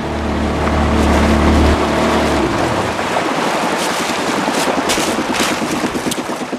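An outboard motor running on a small aluminium boat, a steady low hum that is strongest for the first two seconds or so. After that the motor sits lower under a hiss of wind and water.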